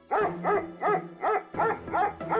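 A collie barking in a quick, steady run of short barks, about three a second, signalling that it has picked up a scent.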